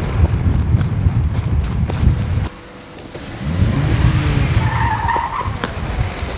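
A car drives up, its engine revving up and then dropping, and its tyres squeal briefly as it brakes to a stop about five seconds in. Before that, the first two and a half seconds hold a loud low rumble with thuds.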